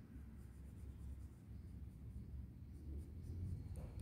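Faint scratching of a wax crayon colouring in on textbook paper.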